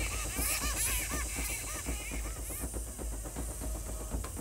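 A small captured bat squealing in distress while held in the hand: a rapid run of short, arching chirps, like a baby crying, that thins out after about two and a half seconds.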